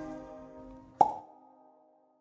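The last keyboard chord of the song fading out, then a single short pop about a second in, with a brief ringing tail that dies away quickly.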